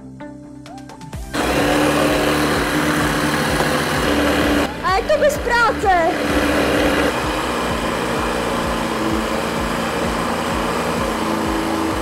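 Electric SUP inflation pump switching on about a second in and running steadily at high level as it inflates an inflatable paddleboard.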